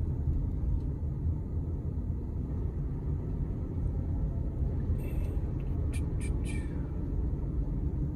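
Low, steady rumble of a car's engine and tyres heard from inside the cabin while driving slowly, with a few brief high hissy sounds about five to six seconds in.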